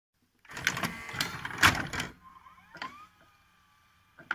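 A burst of analogue TV static hiss with crackles, about a second and a half long. It is followed by faint rising whines and a click, then it falls quiet.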